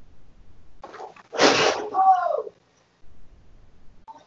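A short clatter as the side of a refrigerator falls off, then a brief scream that falls in pitch.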